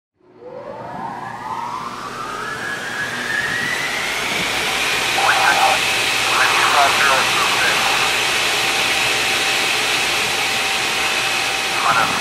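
Jet airliner engines spooling up: a whine climbs in pitch over the first few seconds, then holds steady over a loud rushing rumble.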